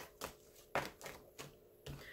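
Tarot cards being handled and shuffled while a card is drawn: four soft, short clicks about half a second apart.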